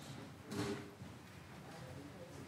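Quiet room tone in a large room with faint shuffling sounds, and one brief, louder soft noise about half a second in.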